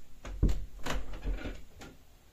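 A small ceramic bowl being picked up and handled on a tabletop: a few knocks and light scrapes of the bowl against the table. The loudest knock comes about half a second in.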